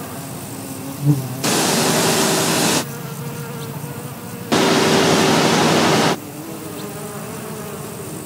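Bumblebees buzzing close by. Two loud stretches each last about a second and a half, with a quieter hum between them.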